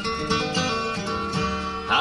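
A live bluegrass band of acoustic guitars, mandolin and bass playing an instrumental passage between vocal lines, with a louder plucked note near the end.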